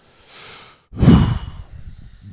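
A man draws a breath in, then lets out a heavy sigh into a close microphone about a second in, the sigh fading out slowly.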